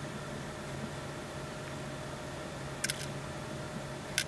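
Quiet room tone: a steady low hum, with a couple of faint short clicks close together about three seconds in.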